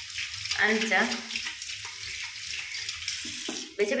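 Water running steadily from a tap, then shut off abruptly near the end, with a few spoken words about a second in.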